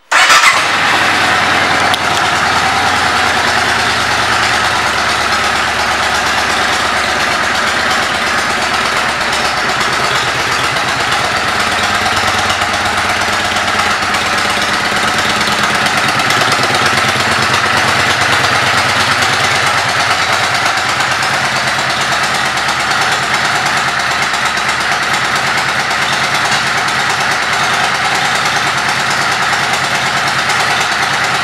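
Yamaha V Star 650's air-cooled V-twin engine starting right at the beginning, then idling steadily.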